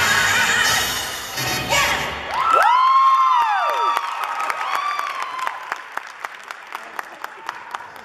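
Stage dance music cuts off about two seconds in. The audience cheers with two long, high whooping calls that rise and fall in pitch. Then come evenly spaced sharp clicks, about three a second, fading as the dancers walk off in their dance shoes.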